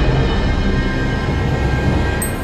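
Background music of sustained, droning held tones.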